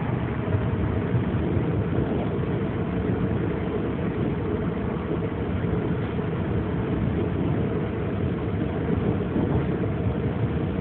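Long Island Rail Road commuter train running at speed, heard from inside the passenger car: a steady, low running noise.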